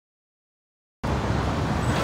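About a second of dead silence, then steady road traffic noise of passing vehicles starts.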